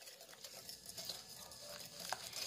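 Small wire whisk beating egg whites and sugar in a glass bowl: faint, rapid ticking and scraping of the wires against the glass.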